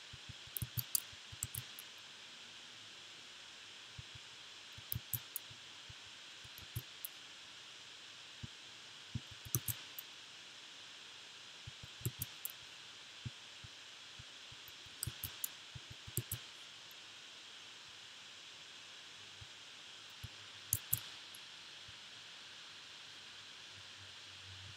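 Scattered computer keyboard and mouse clicks, coming in short clusters every few seconds, over a steady faint hiss.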